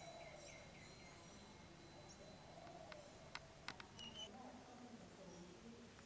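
Near silence: faint outdoor ambience with a few faint high chirps and a short run of faint sharp clicks about three seconds in.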